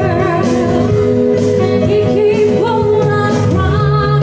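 A singer performing live into a microphone, accompanied by an acoustic band with acoustic guitar; the voice moves in gliding phrases with held notes over a steady accompaniment.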